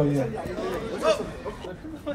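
Speech: a man's voice trails off in the first half-second, then quieter crowd chatter with brief voices.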